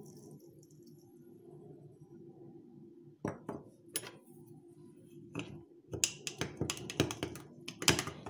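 Metal spoon clinking against a glass mug while stirring powdered gelatin into water so no lumps remain. A faint steady hum comes first, then a few separate clinks about three seconds in, then quick, rapid clinking in the last two seconds.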